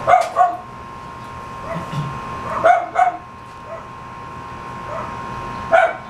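Dogs barking in short, sharp barks, mostly in pairs: twice right at the start, twice a little under halfway through, and once more near the end.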